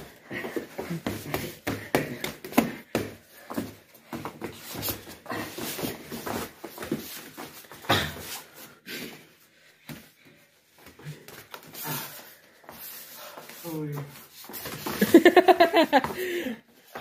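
Two people grappling on foam floor mats: scuffling and sharp slaps of bodies on the mats, mixed with voices. A loud voice comes in near the end.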